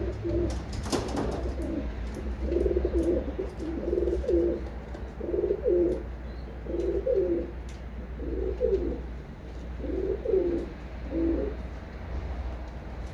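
Racing pigeons cooing in a loft: a run of low, repeated coo phrases, one after another every second or so, over a steady low hum. A sharp tap comes about a second in.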